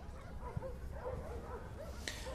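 Dogs yelping and whining faintly in the background, a string of short high calls over low crowd and street noise.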